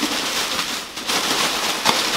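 Steady rustling and crinkling of plastic and packing material as hands dig through a cardboard shipping box, with a couple of sharper crackles about one and two seconds in.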